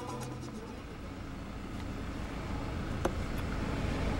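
Road and engine noise inside a moving van's cabin: a steady low rumble that grows slightly louder, with a single click about three seconds in.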